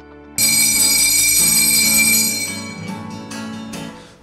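A bright bell-like chime strikes once about half a second in and rings out, fading away over the next two seconds or so.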